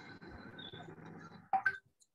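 Faint steady hiss of room noise picked up by an open microphone on a video call, cutting off suddenly about one and a half seconds in, followed by a short louder sound.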